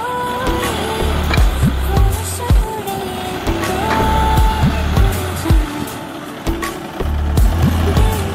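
Background music with a deep bass drum beat and a steady melody.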